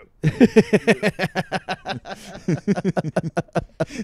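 A man's voice imitating vomiting in rhythm: a fast string of short retching and gagging noises, repeated over and over.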